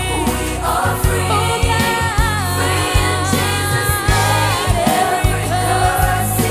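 Upbeat gospel song sung live: young lead singers on microphones backed by a children's choir, over a band with drums, bass and keyboard keeping a steady beat.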